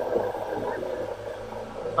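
Steady hiss and low hum from an open public-address microphone and loudspeaker.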